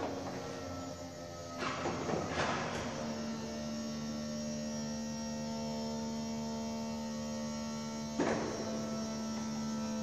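Lamborghini Gallardo Spyder's electro-hydraulic soft-top mechanism opening the roof: a steady pump hum, with clunks about two seconds in and again near the end as the rear cover lifts and the top begins to fold.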